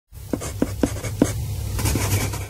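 Chalk writing on a slate chalkboard: scratchy strokes with four sharp taps in the first second and a half, over a low steady hum.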